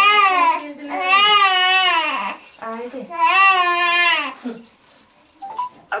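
Newborn baby crying: two long wailing cries with a short breath between them, dying away about four and a half seconds in.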